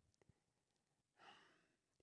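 Near silence, with one faint breath drawn into a handheld microphone about a second and a quarter in, just before speech resumes.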